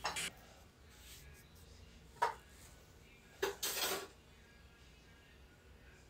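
Basting brush and utensil knocking and scraping against a small stainless steel bowl of marinade: a click at the start, a sharp clink about two seconds in, and a longer scrape a little before four seconds, with quiet in between.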